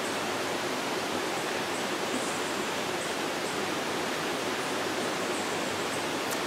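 River flowing close by, a steady, unbroken rush of water.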